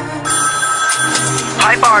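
Recorded pop dance track played over a hall's sound system. After the singing stops, an electronic telephone-style ringing tone comes in about a quarter second in. Near the end a voice calls out "Barbie!".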